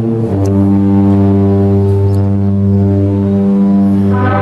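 Brass band holding one long, low chord. It moves onto the chord about a third of a second in and sustains it until it changes right at the end.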